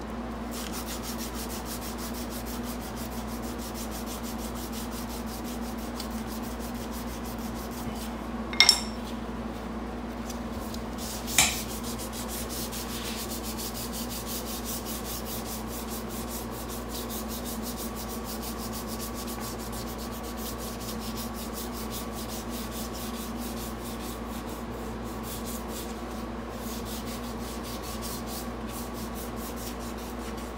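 Sandpaper rubbed by hand in quick back-and-forth strokes along a wooden knife handle, over a steady low hum. Two sharp clinks ring out about three seconds apart, roughly a third of the way in, and are the loudest sounds.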